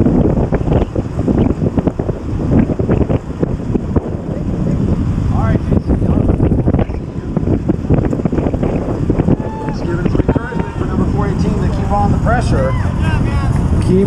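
Loud wind buffeting on the microphone of a camera riding on a track bike at about 27 mph. Voices call out over it in the last few seconds.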